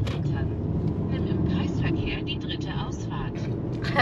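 Steady low road and engine noise inside the cabin of a moving car, with a quiet voice talking over it.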